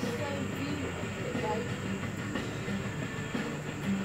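Steady hum and whir of an electric pedestal fan running, with faint voices underneath.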